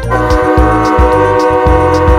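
A cartoon train horn sounds one long, steady blast of several tones at once, over a children's music track with a steady drum beat.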